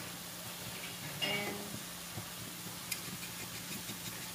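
Faint steady sizzle of noodles and vegetables cooking in a pan with a little water and salt, under a low steady hum. A brief hum of a voice about a second in and a light click near three seconds.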